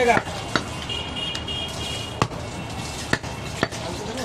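A butcher's long knife chopping goat meat on a wooden stump block: four or five sharp knocks, spaced about a second apart and irregular.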